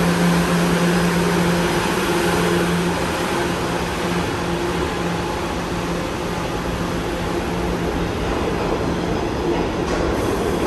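Subway train running on the track: steady wheel-and-rail noise with a low steady hum that fades out near the end.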